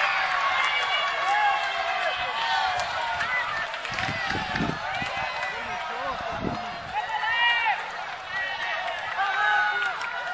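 Spectators' voices calling and shouting at an amateur football match, including several high-pitched shouts, with a few low thumps about four to five seconds in and again around six and a half seconds.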